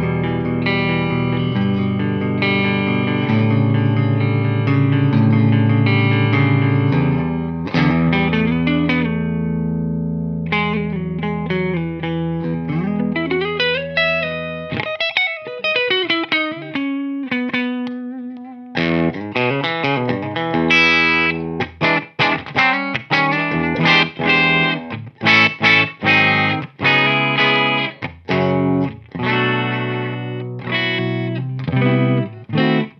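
Gibson Slash Les Paul electric guitar with Alnico II humbuckers played on a clean amp tone: long ringing chords for the first half, then single-note lines with string bends, then short choppy chords in the last third.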